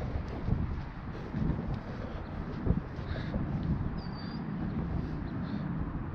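Wind buffeting the microphone in a low, steady rumble, under the faint rubbing of a microfiber towel being wiped over a car's waxed rear glass. A brief high squeak about four seconds in.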